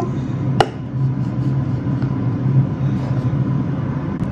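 Steady hum of a Sur La Table air fryer's fan running while it preheats, with one sharp click about half a second in as a plastic burger press is pushed down.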